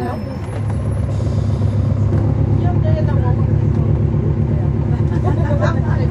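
Cummins ISL9 diesel engine of a 2011 NABI 416.15 transit bus, heard from on board, with a steady low drone that grows louder about a second in as the bus pulls ahead, then holds.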